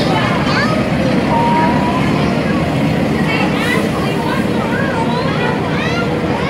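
Truck engine running steadily as a flatbed trailer rolls slowly past close by, with voices calling out over it.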